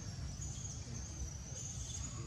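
Insects droning with a steady high-pitched buzz, over a low background rumble.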